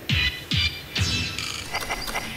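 Quiz-show music sting introducing a question: three quick hits about half a second apart, each dropping in pitch, with a bright ringing shimmer on top, then a quieter tail.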